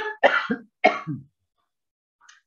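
A woman clearing her throat: three short coughs in quick succession over about a second.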